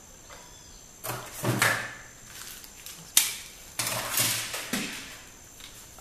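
Handling noise of small plastic items on a tabletop: rustling and knocking in bursts, with one sharp click about three seconds in.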